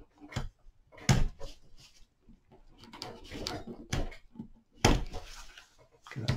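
Masking tape being cut and pulled off a dried, curved willow form with a craft knife, the cane knocking on the tabletop as it is handled. Scratchy crackling, with sharp knocks about a second in and near the end.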